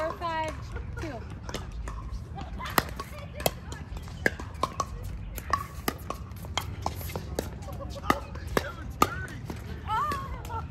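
Pickleball rally: paddles strike a plastic pickleball and the ball bounces on the hard court, making a string of sharp pops at uneven intervals, the loudest a little under three seconds in and again near the end. Short bits of voice are heard at the start and near the end.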